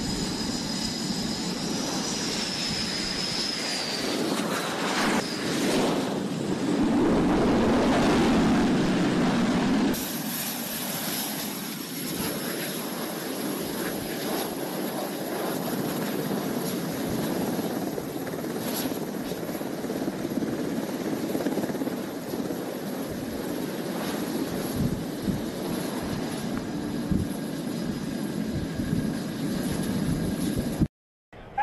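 Jet engines of a US Navy F/A-18 Super Hornet coming aboard a carrier: a high whine falls in pitch as it approaches, then the engine noise swells loud for a few seconds. After a sudden cut the jet runs steadily at low power on deck, with a constant high-pitched whine over the rush.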